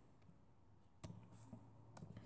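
Near silence: room tone, with two faint short clicks, one about a second in and one near the end.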